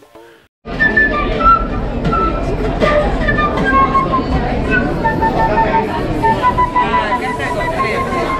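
Wooden flute played by a street musician, a melody of short, repeated notes, mixed with beatbox sounds, over crowd chatter. It starts suddenly under a second in, after a moment of silence.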